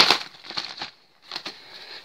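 Rustling and crinkling of a nylon stuff sack and plastic food packets being handled, in short scattered bursts with a brief lull about a second in.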